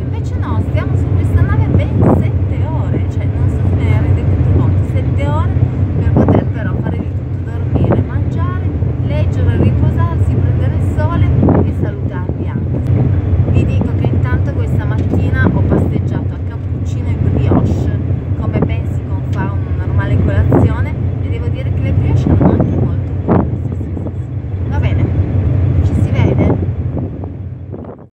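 Steady low drone of a ferry's engines running under a woman talking in Italian; everything fades out at the very end.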